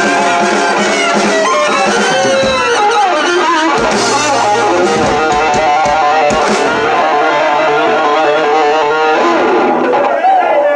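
Live band playing an instrumental passage with no singing, led by electric guitar over upright bass and drums, with saxophone, including bending notes and a run of quick repeated notes near the end.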